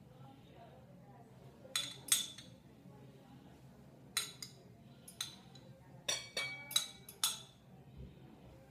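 A metal spoon clinking against a small glass cup and a bowl while egg whites are separated from the yolks: a series of short, sharp clinks, a few in the first half and more frequent near the end.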